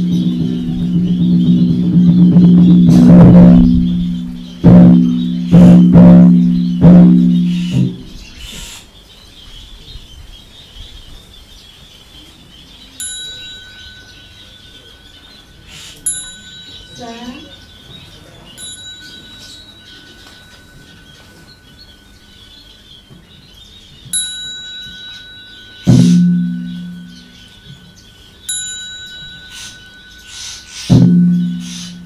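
A large, low-pitched temple bell struck several times in quick succession, each stroke ringing on with a long hum, then a small high-pitched bell struck singly every few seconds, with one more low bell stroke in the last few seconds. Faint bird chirping runs underneath.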